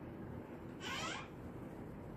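Marker squeaking on a whiteboard once, about a second in, a short high-pitched squeal as an angle arc is drawn.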